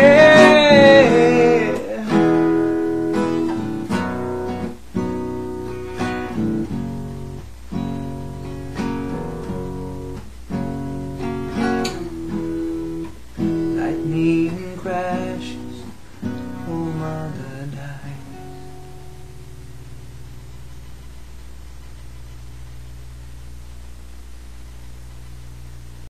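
Acoustic guitar playing the slow closing chords of a song, strummed about once a second and gradually dying away, after a last held sung note fades about a second in. The playing stops about two-thirds of the way through, leaving only a faint low hum.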